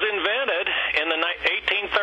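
A man speaking over a narrow, telephone-quality line.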